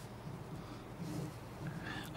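Quiet room tone of a microphone-fed sound system: a steady low electrical hum under faint background noise, with a faint low murmur about a second in.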